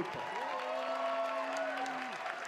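Audience applauding and cheering, with one long held call over the noise.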